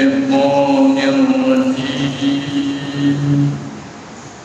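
A man's voice chanting an Arabic invocation in long, drawn-out held notes, fading out about three and a half seconds in.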